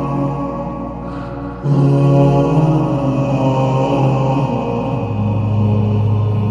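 Slowed, reverb-heavy a cappella nasheed: layered male voices holding long, low chant-like notes. The sound thins briefly about a second in, then comes back louder.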